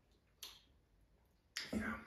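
A single short, sharp lip smack about half a second in, as a mouthful of beer is tasted, followed by a spoken 'Yeah'.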